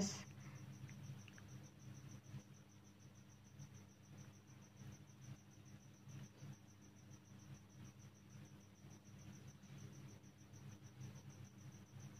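Near silence: faint scratching of a ballpoint pen writing on paper, under a steady high-pitched pulsing tone and a low hum.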